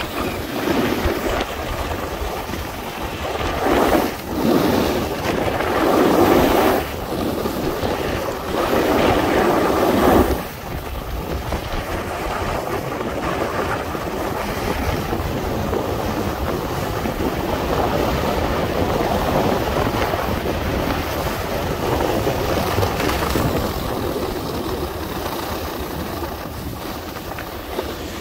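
Wind buffeting the microphone over the hiss and scrape of edges sliding and carving on semi-firm groomed snow. It surges louder for a few seconds at a time about four and eight seconds in, then settles to a steadier, softer rush.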